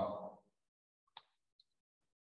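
A man's voice trailing off at the very start, then silence broken once, a little over a second in, by a single short faint click.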